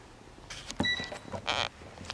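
Handling noises at a pulpit microphone as papers and items are gathered up: a knock, a brief high squeak about a second in, then a short paper rustle.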